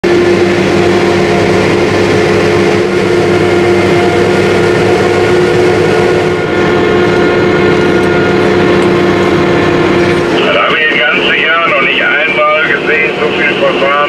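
Claas Jaguar self-propelled forage harvester running under load while chopping maize: a steady machine drone with steady tones. About ten seconds in the machine sound drops back and a voice comes in over it.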